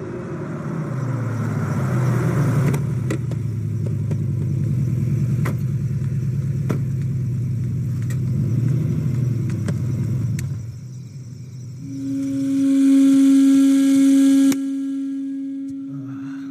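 An engine running steadily for about ten seconds, with a few sharp clicks over it. Then a loud, held low tone that drops suddenly in level.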